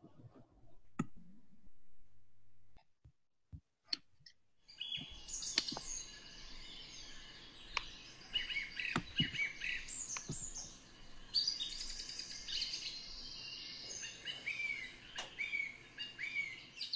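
Birds chirping and singing, several short calls overlapping, starting suddenly about five seconds in over a faint background hiss; before that only a few faint clicks.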